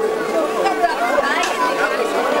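People chattering close by during a brief lull in the band's music; a steady held tone dies away about half a second in.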